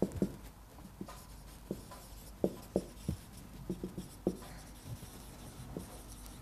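Marker writing on a whiteboard: an irregular scatter of short taps and brief squeaks as the strokes are drawn.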